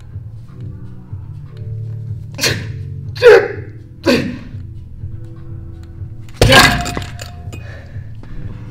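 Three strained exhalations during a one-arm lift of a loading pin stacked with rubber-coated weight plates, then the plate stack dropped back onto the floor with a loud clanking thud about six and a half seconds in, over background music.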